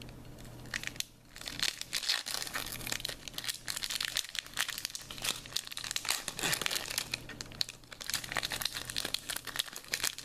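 Foil Pokémon booster pack wrapper crinkling and tearing as it is ripped open by hand, a dense run of sharp crackles.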